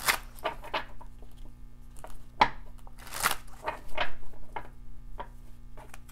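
A tarot deck being shuffled and handled by hand: irregular card snaps and rustles, busiest about three seconds in.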